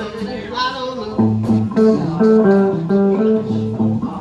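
Guitars playing a riff of picked notes. From about a second in the notes come evenly, a few a second, with low bass notes under the first few and again near the end.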